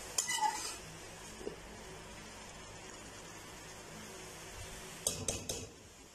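Slotted metal spoon stirring rice in a large metal pot, its scrapes and clinks against the pot heard in the first half second and again about five seconds in. A faint steady hiss from the cooking pot runs in between.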